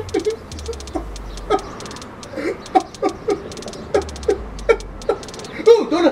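A man laughing in short, repeated bursts over background music with a steady ticking beat and a bass line.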